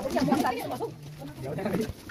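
Several people talking over one another in a narrow rock cave, indistinct chatter with no clear words.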